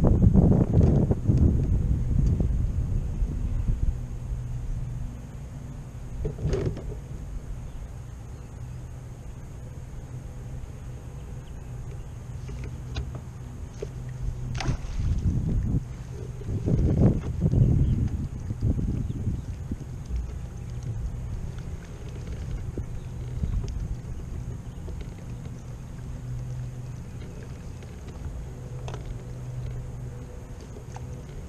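Small electric trolling motor on a fishing kayak humming steadily, cutting out and back in a few times. Wind gusts rumble on the microphone at the start and again about halfway through, and there are two sharp knocks.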